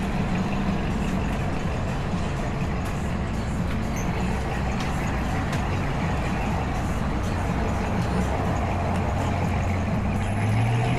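Steady city street traffic, with motor vehicle engines running close by and a low engine hum.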